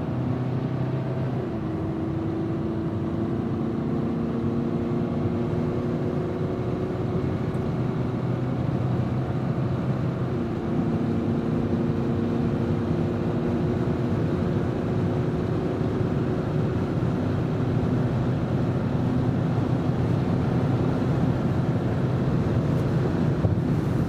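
Jeep Cherokee's 2.2-litre Multijet four-cylinder turbodiesel at full throttle, heard from inside the cabin while accelerating hard at motorway speed. The engine note climbs slowly, drops at an upshift of the nine-speed automatic about a second and a half in and again about ten seconds in, and then climbs again, over steady road and wind noise.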